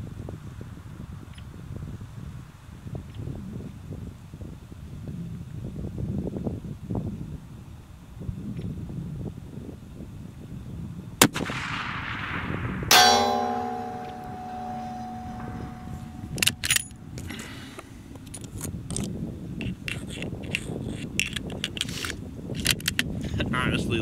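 A Savage 110 .338 Lapua Magnum rifle fires once, a single sharp report about eleven seconds in. About a second and a half later a metallic clang rings on in several steady tones for a few seconds, timed like the bullet striking the steel target plate. Short clicks follow as the bolt is worked and the rifle reloaded, over low wind noise.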